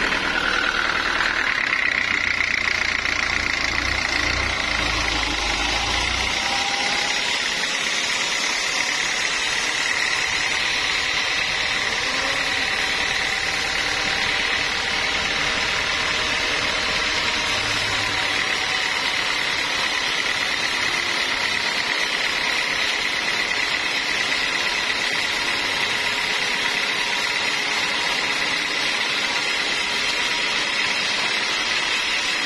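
Band sawmill running with a steady high whine over a mechanical hum, with a low rumble for the first six seconds or so that then drops away.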